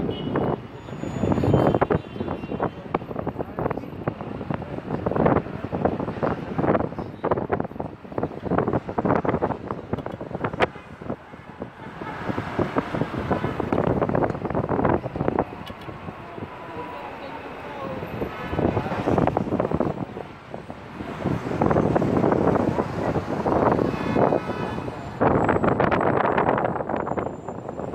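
People's voices talking close by, over a steady wash of city street traffic from the boulevard below.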